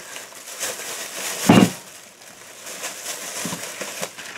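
Thin plastic shopping bag rustling and crinkling as items are pulled out of it by hand, with one brief, louder low sound about a second and a half in.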